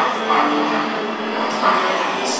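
Live experimental sound performance: a dense, steady wash of noise with a few held low tones sounding through it.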